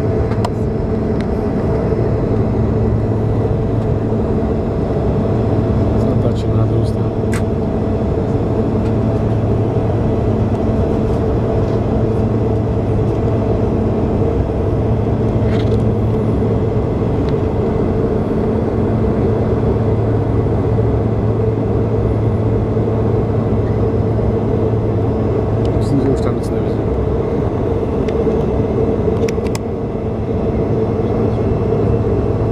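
Steady drone of an airliner's jet engines and airflow heard inside the cabin during flight, with a constant low hum and a few steady tones. A few faint clicks sound now and then.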